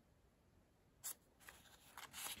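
Near silence, broken about a second in by a short rustle of a hand brushing across a book's paper pages, with a few faint paper scrapes after it.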